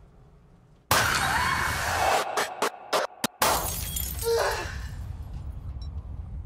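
Horror film-trailer sound design: after a near-silent pause, a sudden loud crash like shattering glass about a second in, a quick run of sharp hits, then a second loud crash that dies away, all mixed with dramatic music.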